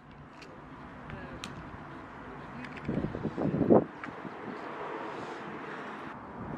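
Outdoor ambience with wind noise on the microphone. About three seconds in comes a louder, brief rough sound of movement, lasting under a second.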